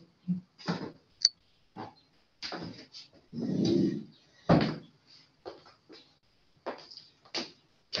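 Handling noise as a laptop camera and its microphone are moved on a lab bench: a string of irregular knocks and bumps, a longer rustle about three and a half seconds in, and a sharp thud about a second later, the loudest sound.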